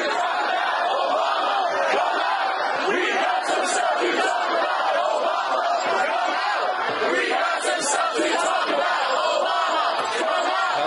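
Large crowd of protesters shouting and chanting together, a dense, steady mass of many voices at once.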